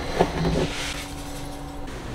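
A scoop scraping and rustling through cat litter in an enclosed litter box, with a sharp knock at the very start, over a steady low hum.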